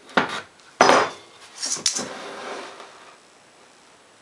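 A homemade wooden tailstock with a bolt-and-nut live center is handled and set down on a wooden lathe bed: three sharp wood-and-metal knocks and clinks in the first two seconds, the middle one loudest. A softer scraping follows as it is slid into place.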